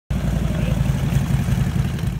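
Harley-Davidson Road Glide's V-twin engine idling with a loud, low, pulsing rumble.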